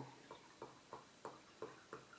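Gin glugging out of a glass bottle as it is poured into a jar: faint, evenly spaced glugs, about three a second.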